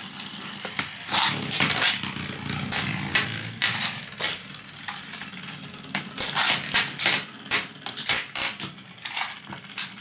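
Metal Beyblade spinning tops clattering and clinking as they knock into each other and against a plastic tray, in irregular sharp hits. A louder cluster of clatter comes about six seconds in, as another top is launched onto the tray.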